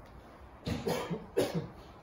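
A man coughing twice, two short coughs about two-thirds of a second apart.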